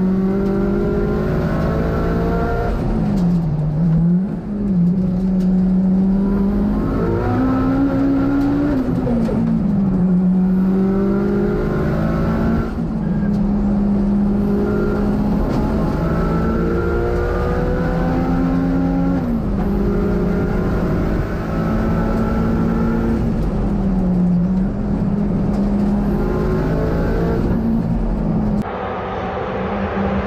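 Turbocharged race car engine heard from inside the cabin at full throttle, its revs climbing and dropping again and again through gear changes. About a second and a half before the end, the sound switches to the open roadside.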